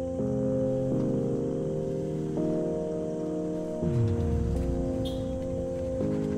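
Outro background music: sustained chords that change every second or so, with a low falling sweep about four seconds in.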